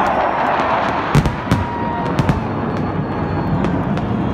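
Fighter-jet formation flying overhead: a steady rush of jet noise over the crowd, broken by several sharp bangs between about one and two and a half seconds in.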